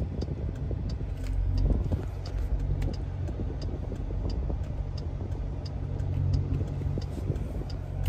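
Cabin sound of a 2020 Jeep Grand Cherokee SRT: a steady low hum from the running SUV, with the turn-signal indicator clicking evenly about twice a second.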